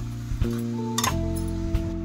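Background music with long held notes, and a few sharp clinks of a perforated metal ladle against a metal kadhai as grated coconut and sugar are stirred.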